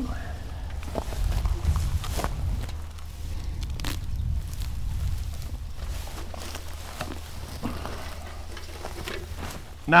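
Spade cutting into switchgrass sod and the deep roots tearing as a clump is pried out, heard as scattered snaps and crunches over a low steady rumble.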